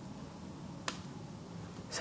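Quiet room tone with a single sharp click a little under a second in.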